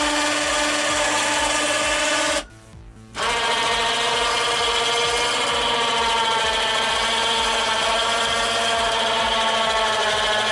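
Electric winch motor running and winding the cables of a bed-lift pulley system, a steady whine. It cuts out for under a second about two and a half seconds in, then starts again at a different pitch.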